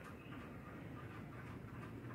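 Faint, steady room tone with no distinct sound.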